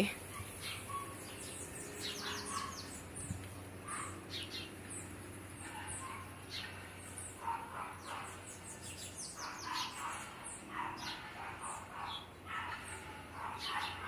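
Small songbirds chirping: irregular runs of short, high chirps, many sweeping downward, with fainter lower calls in between.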